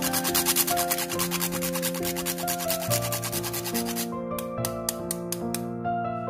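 A whole nutmeg scraped on a flat metal grater in rapid rasping strokes, which thin to a few spaced strokes about four seconds in and then stop.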